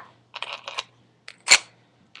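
Small earrings and their holders being handled: a few quiet rustles and light clicks, then one sharp click about a second and a half in.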